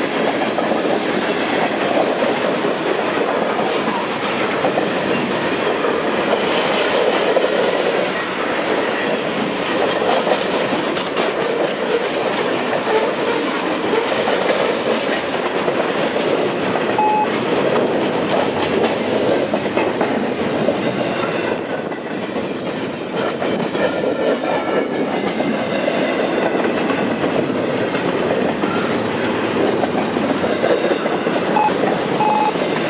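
Freight cars rolling past close by, covered hoppers and then double-stack container well cars: a loud, steady rumble of steel wheels on rail, with wheels clicking over rail joints. A faint high wheel squeal comes in during the second half.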